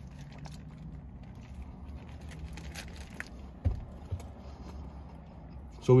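Quiet chewing of a mouthful of Whopper burger over a steady low hum in a car cabin. There are faint wet mouth clicks and a couple of soft knocks a little past the middle.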